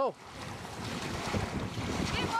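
Wind rumbling on the microphone, with a steady wash of water.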